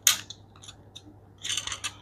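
Plastic joints of a GoGo Dino transforming robot-dinosaur toy clicking as its parts are swung and snapped into place. There is a sharp click at the start, a few faint ticks, then a quick run of clicks near the end.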